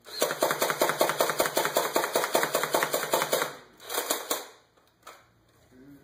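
Minimized Nerf Stampede ("Mini-pede") blaster with a 9 kg spring, run on four Trustfire lithium cells, firing full auto: a fast, even run of motor-driven plunger shots for about three and a half seconds. A short second burst near the four-second mark is the auto-return circuit bringing the plunger home.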